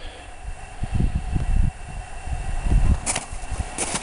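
Wind buffeting the camera microphone in uneven low gusts, with two brief sharp rustles near the end.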